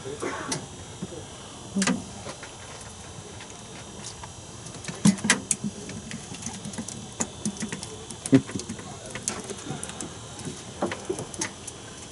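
Scattered light clicks and knocks of hands handling a jigging line and fishing gear, with a few sharper knocks about two, five and eight seconds in.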